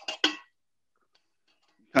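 A man's word trailing off, then about a second and a half of near silence with a few very faint ticks; no mixer motor is running.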